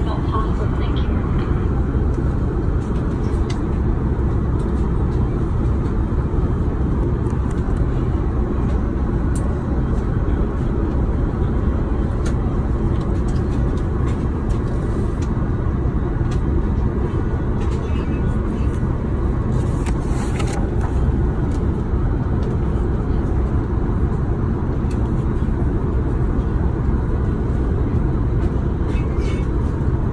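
Steady low rumble of an Airbus A380's cabin noise, engines and air flow, holding an even level throughout, with a few faint rustles of menu pages now and then.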